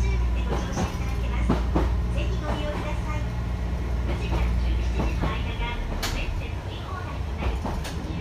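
Chikuho Electric Railway 3000-series electric car's nose-suspended (tsurikake) traction drive growling as the train runs, heard inside the car with the windows open. A steady low drone carries several sharp clicks, the loudest about six seconds in.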